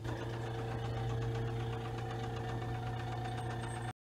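Seeburg Select-O-Matic jukebox mechanism running with a steady motor hum, cutting off abruptly just before the end.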